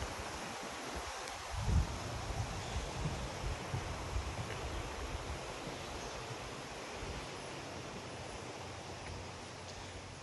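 Steady rushing of a creek running close by, with a few low thumps about two seconds in.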